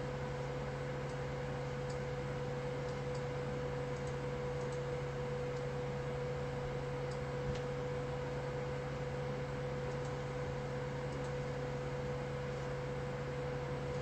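Steady low room hum with a constant tone running under it, and a few faint, scattered computer mouse clicks.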